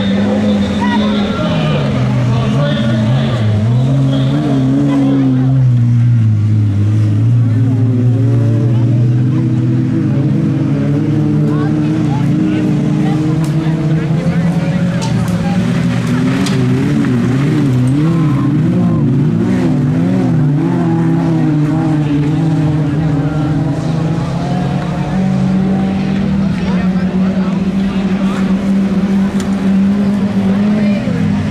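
Engines of several 1800-class autocross cars racing on a dirt track, revving up and dropping back over and over as they accelerate and lift through the corners.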